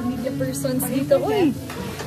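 Voices of a small group at a table, with a loud falling exclamation about a second in, over a steady hiss of room noise.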